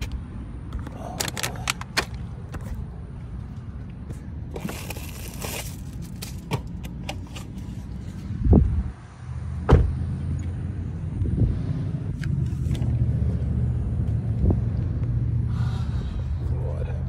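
Handling and knocking about inside a car, with scattered clicks and two heavy thumps about halfway, over a steady low hum from the car's running engine.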